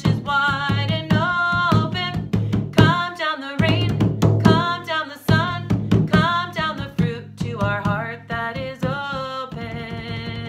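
A woman singing a children's song while beating a large hand drum with her palms in a steady rhythm, the song ending on a long held note near the end.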